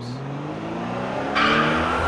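Sound effect of a car engine revving with a slowly rising note, joined about a second and a half in by a louder tyre screech as the car peels away.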